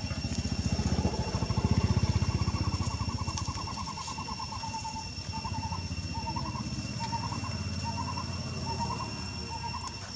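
A motor engine running nearby, its low rumble swelling to its loudest about two seconds in and then easing off. Over it a short rising chirp repeats, quickly at first and then about every half second, with a steady high whine throughout.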